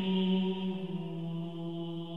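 One low chanted vocal note, held steadily and slowly fading, as a dark intro to a black metal track.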